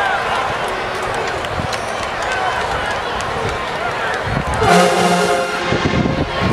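Stadium crowd chatter, then about four and a half seconds in a marching band's brass section sounds one loud, short held chord lasting about a second.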